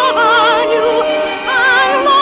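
Music from an old radio-broadcast recording: a high operatic singing voice holds notes with a wide vibrato over accompaniment, moving to new notes twice.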